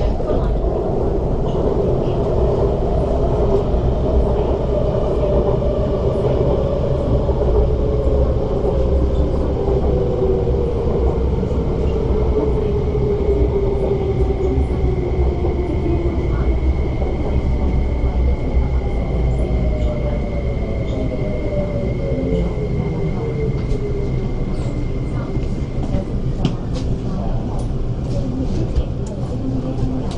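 Inside an MTR West Rail Line train braking into a station: rumble and the whine of the traction motors, which falls slowly in pitch as the train slows. A steady high tone sounds through the middle and stops as the train comes to rest, and a few clicks follow near the end.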